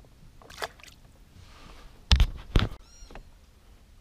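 Two knocks against a kayak about half a second apart, after a few lighter clicks, as the angler handles his catch and tackle in the boat.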